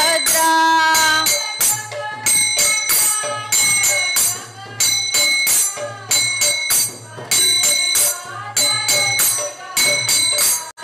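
Small brass hand cymbals (kartals) struck in a steady rhythm, each strike ringing on, accompanying a woman singing a devotional bhajan, with a low hum underneath.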